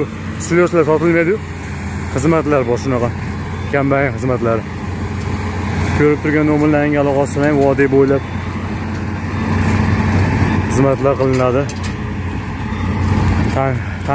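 A man talking in short phrases over the steady low drone of a Claas Jaguar self-propelled forage harvester chopping maize into a truck.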